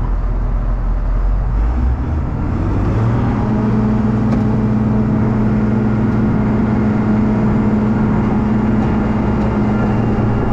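Diesel engine of a Cat 953C track loader picking up speed about two to three seconds in, then running steadily at higher revs.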